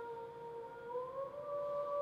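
Mezzo-soprano voice holding a soft sustained note that glides up a step about halfway through and holds the higher pitch.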